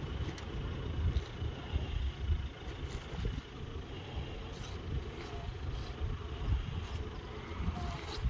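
Wind buffeting the microphone outdoors, an uneven low rumble that rises and falls, with a few faint clicks.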